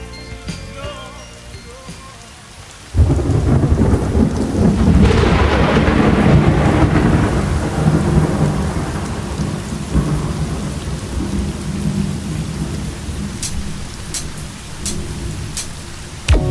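A recorded thunderstorm: after the tail of a song fades out, a sudden thunderclap about three seconds in rolls into a long rumble over steady heavy rain.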